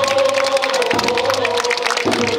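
A festival crowd with one long held shouted call that dips slightly in pitch after about a second, over scattered claps and crowd noise.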